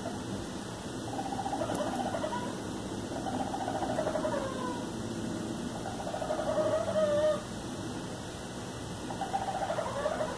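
Raccoon making a rapid, pulsing churr that sounds like a chicken, in four bouts of a second or two each, the loudest about seven seconds in.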